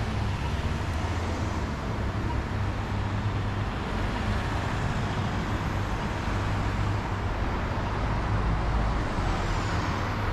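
Road traffic on a city street: a car and then a city bus drive past, a steady low rumble of engines and tyres that grows slightly louder near the end.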